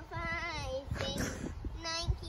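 A young child singing in long, held notes without clear words, one note sliding down in pitch about half a second in.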